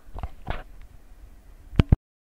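A few short clicks over a faint low hum, with two sharper, louder clicks close together near the end, after which the sound cuts off completely.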